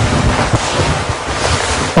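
Loud rushing noise with an irregular low rumble on the presenter's microphone, like the mic being rubbed or handled as he moves. It cuts off sharply when he starts speaking again.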